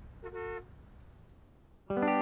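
A single short car horn toot, two tones sounding together, about a quarter second in, over a faint low outdoor rumble. Music with sustained instrumental notes starts suddenly near the end.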